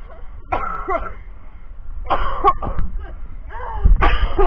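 Three short wordless vocal outbursts from people, their pitch swooping up and down, about a second apart.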